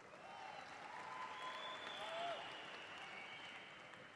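Faint audience applause that swells to a peak about two seconds in and then dies away, with a few cheering shouts over it.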